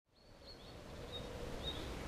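Faint outdoor ambience fading in from silence: a low steady rumble with a few brief, high bird chirps.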